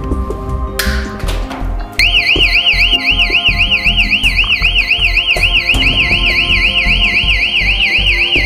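An electronic warbling alarm siren goes off about two seconds in, its pitch sweeping up and down about three times a second: a copper-wire theft alarm sounding. Background music with a steady beat plays throughout.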